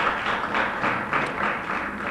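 Audience applause, a short round of clapping that tapers off near the end.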